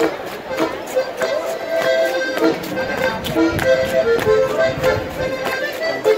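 Accordion playing a lively traditional Alpine dance tune in short, changing melody notes, over a steady beat of sharp taps.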